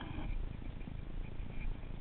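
Baitcasting reel being wound in: a low, rough whirr from the gears with faint quick ticking.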